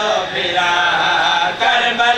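Several men chanting a devotional lament together into microphones over a public-address system. Their voices hold long, wavering notes, with a brief break for breath near the end.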